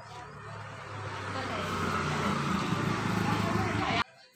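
A motor vehicle passing by, its engine hum and noise growing steadily louder and then cutting off abruptly at the end.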